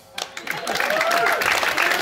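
Small audience applauding and cheering as a song ends, the clapping starting a moment in, with a few voices calling out over it.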